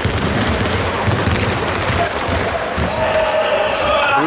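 A basketball being dribbled on a hardwood court, its bounces landing as repeated dull thuds that echo in a large sports hall.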